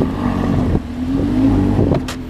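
Lamborghini engine running, its pitch rising in the second half as it revs.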